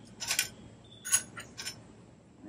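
A handful of light, sharp metallic clinks and taps from a hand tool working in the exposed torque-converter pulleys of a Predator 212cc engine, picking at the remains of a belt that has burnt up; the loudest clink comes a little past a second in.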